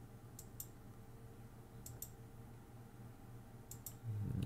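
Faint, sharp little clicks in three quick pairs, about a second and a half apart, over a faint steady low hum.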